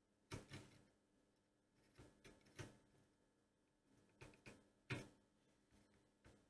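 Faint clicks and taps of metal tweezers and soldering tools against a circuit board while a small surface-mount diode is desoldered and lifted off, coming in three short clusters of two to four clicks.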